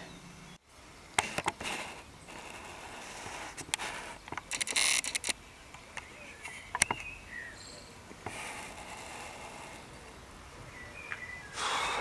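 Quiet outdoor background with a few scattered sharp clicks, a brief hiss about five seconds in, and a few faint short chirps, like distant birds, in the second half.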